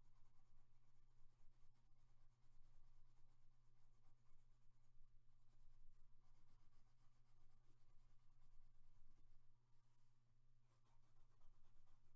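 Faint scratching of a coloured pencil shading on paper, pausing briefly about ten seconds in, over a steady low electrical hum.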